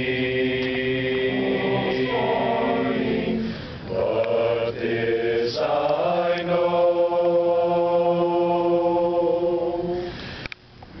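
A group of voices singing a hymn a cappella in harmony, moving through sustained chords. There is a short breath break about three and a half seconds in, and the last four seconds hold one long chord.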